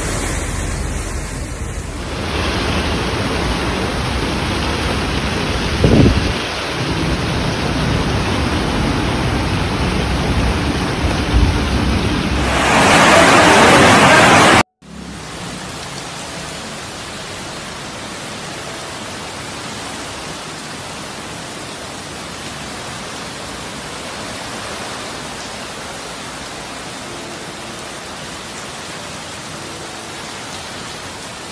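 Steady rushing of street floodwater and heavy rain, swelling louder for about two seconds before cutting off abruptly halfway through. A quieter, even hiss of rain and water follows, with a couple of brief thumps in the first half.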